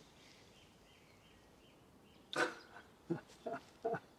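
After about two seconds of quiet, a man laughs in short breathy bursts, about four of them, each falling in pitch.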